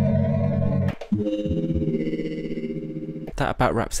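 Modal Electronics Argon8 wavetable synthesizer playing a pulsing held chord that cuts off about a second in, followed by a second, steadier held chord. A man's voice begins near the end.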